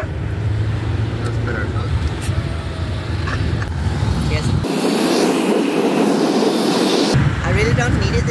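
Steady low road and engine rumble inside a moving passenger van's cabin, with faint voices. For a couple of seconds in the middle the rumble drops out and a brighter, even hiss takes its place before the rumble returns.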